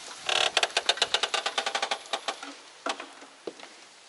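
Old carved wooden door being pulled open: a loud creak from its hinges, a fast run of clicks about ten a second that slows and fades over about two seconds. A few single knocks follow near the end.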